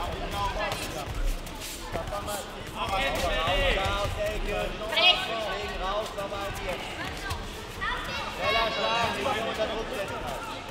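People shouting and calling out over a kickboxing bout, with one sharp rising shout about five seconds in. A few dull thuds come in the first couple of seconds.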